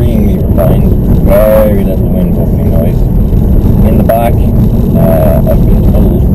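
Steady low rumble of road and wind noise inside the cabin of a moving Volkswagen Golf Cabriolet, with a man talking over it in short phrases.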